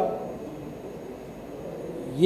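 A pause in a man's speech: steady low background hiss of the room and recording, with the last syllable of his voice briefly fading out at the start.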